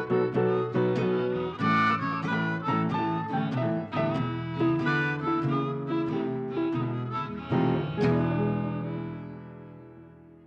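Background music led by plucked acoustic guitar, ending on a last chord about eight seconds in that rings and fades away.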